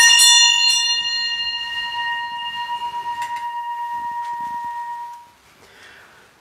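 Small altar bell at Mass: a few quick strikes at the start, then one clear ringing tone fading away over about five seconds. It marks the moment just before the invitation to Communion.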